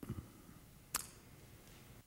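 Quiet room tone with a soft low thump at the start and a single sharp click about a second in.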